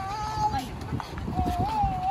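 A high voice drawing out two long, held notes, the second starting about a second and a half in, over a steady low outdoor rumble.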